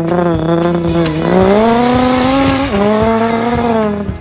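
Race-car engine sound effect accelerating hard: the pitch holds, climbs, drops suddenly at a gear change near three seconds in, then climbs again.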